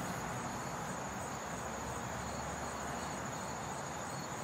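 Crickets singing outdoors: one keeps up a steady, high-pitched trill while a second, lower chirp repeating about three times a second comes in about halfway through, over a steady background hiss.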